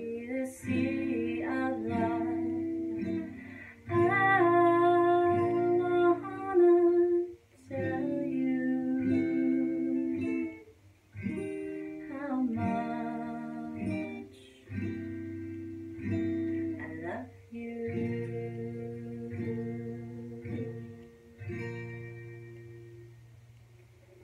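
Takamine acoustic guitar strummed, with a woman singing long held notes over it; the song ends on a final chord that rings and fades away near the end.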